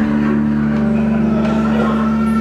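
Live band holding a sustained chord, a steady droning sound, with the chord changing right at the start.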